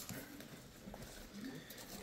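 Quiet room noise with faint voices in the background.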